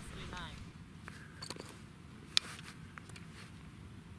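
Light clicks and taps of fired .223 brass cases being handled, with one sharp click a little past halfway.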